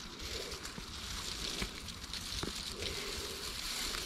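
Quiet footsteps and rustling of forest undergrowth as someone steps down a wooded slope, with a few faint crunches over a steady outdoor hiss.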